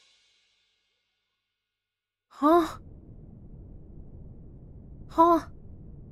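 After about two seconds of silence, a person's voice gives two short sighs about three seconds apart, each rising and falling in pitch. A faint low hiss of rain runs beneath from the first sigh on.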